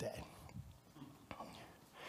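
A man's spoken word trails off at the start, then a pause of low, faint room sound with a couple of faint clicks.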